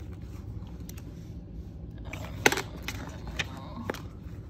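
Books being leafed through and pushed about in a plastic bin: a few short, sharp rustles and knocks of paper and covers in the second half, the loudest about two and a half seconds in.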